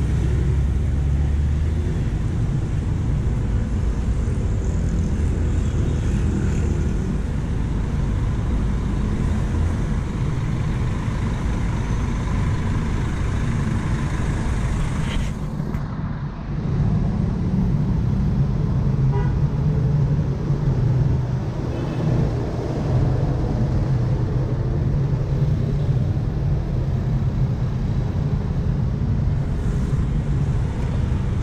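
Steady city road traffic: motorcycles and buses running past. From about halfway, after an abrupt change, a large coach bus's engine runs close by, a steady low hum over the traffic.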